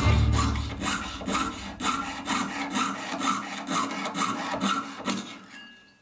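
Jeweler's saw blade cutting brass sheet held on a wooden bench pin, in even rasping strokes about two a second that stop a little before the end.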